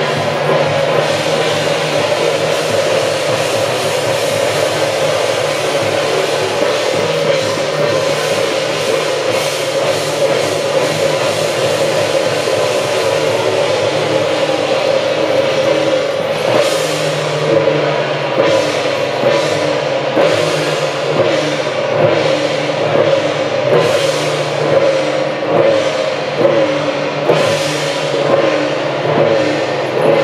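Taiwanese temple-procession music accompanying a Guan Jiang Shou troupe: drums and cymbals beating under a held melodic line. From about halfway through, the cymbal strokes fall into a steady, regular beat.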